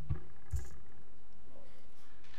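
Two soft thumps picked up by a podium microphone in the first half-second as people move at the podium, then steady room tone.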